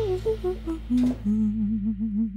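Short TV-show jingle music: a melody of quick stepping notes over a held bass, settling into a wavering held note near the end.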